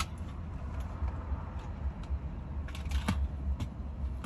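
Low steady rumble inside a car cabin, with a few light clicks from small plastic pieces of a phone holder being handled.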